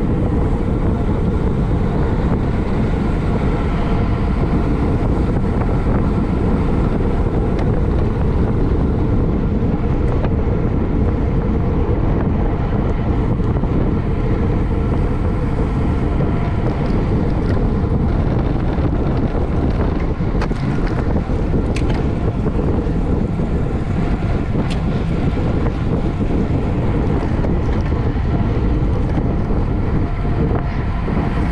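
Steady rush of wind on the microphone of a camera mounted on a racing bicycle at race speed, with road and tyre noise underneath. A few faint ticks come past the middle.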